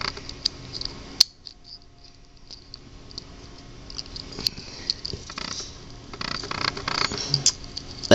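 Faint scattered clicks, taps and rustles of handling, with a sharp click about a second in and busier rustling and clicking in the last few seconds as a hand reaches for the plastic toy.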